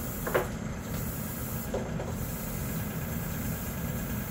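Steady low hum with a hiss from background machinery, with two brief faint voice sounds, about a third of a second in and about two seconds in.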